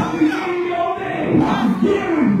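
A woman preacher's raised voice, shouted into a microphone and carried over the PA speakers, in unbroken, chant-like phrases.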